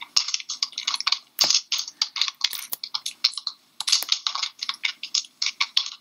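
Fast typing on a computer keyboard: a dense run of key clicks with a couple of brief pauses.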